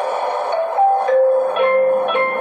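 Background music: a simple melody of short held notes stepping from pitch to pitch, with a lower part that comes back in about a second and a half in.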